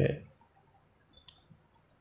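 Ballpoint pen writing on notebook paper: a few faint, short clicks and ticks a little over a second in, after the end of a spoken word.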